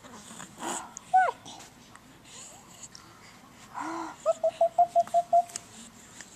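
Young baby vocalizing: a short falling squeal about a second in, a breathy sound near four seconds, then a quick run of about seven short, even-pitched 'ah' sounds.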